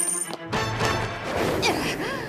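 Cartoon sound effects over dramatic background music: a coin's high metallic ring cuts off just after the start as it settles on the ground, then a loud rush of noise about half a second in as the two racers spring away.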